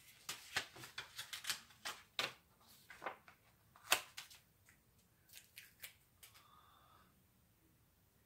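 Paper sandwich wrap sheet crinkling and rustling as it is opened and pulled off a freshly heat-pressed sublimation ornament tag, with light clicks and taps as the tag is handled on the table. The crackles come thick at first, with one sharper click about four seconds in, then thin out toward the end.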